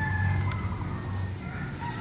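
A rooster crowing: a long drawn-out crow that ends about half a second in, with a fainter crow starting near the end, over a steady low hum.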